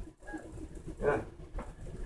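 Quiet room with a single short spoken "yeah" about a second in.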